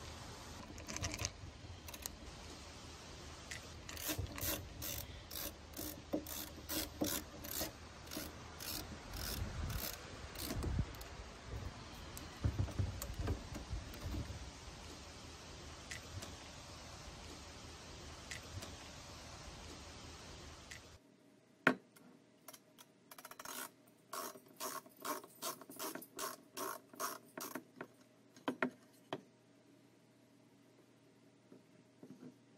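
Screwdriver working the RV door latch and handle screws. It makes runs of sharp, ratchet-like clicks, a few a second, then a break and a second run near the end.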